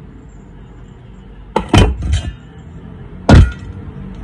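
Sharp knocks of a bolo knife blade striking the hard shell of a mature coconut to split it: two quick blows about a second and a half in, a lighter one just after, and the loudest single blow near the end.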